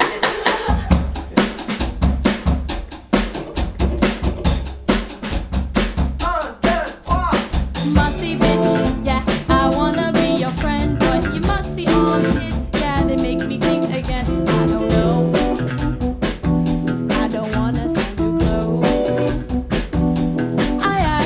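A live rock band plays an instrumental intro in a small room. A drum kit groove with kick, snare and rimshots carries the first few seconds, and bass, electric guitar and keys fill in about eight seconds in.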